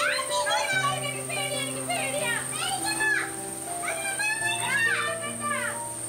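Children's high voices calling out in rising and falling whoops over background music of slow, held chords.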